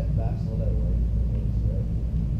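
A faint, distant voice asking a question, over a steady low rumble that is the loudest sound.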